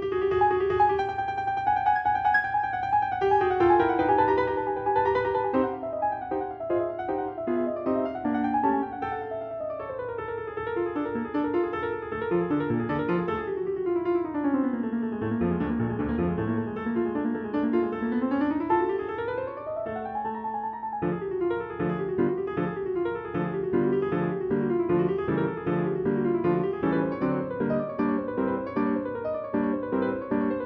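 Background piano music of quick running notes, with a long falling run and then a rising one around the middle, and a busier passage after that.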